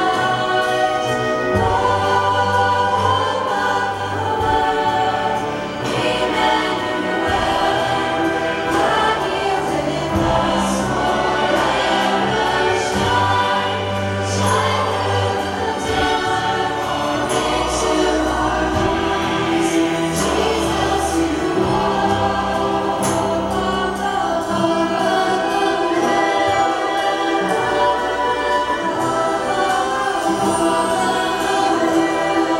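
Large mixed choir and girls' vocal ensemble singing a sacred anthem with orchestral accompaniment of strings, guitar and piano, in sustained chords over long-held bass notes.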